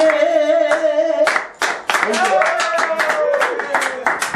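A woman singing a Romani song a cappella, holding long notes, with quick, steady hand clapping keeping the beat from about a second in.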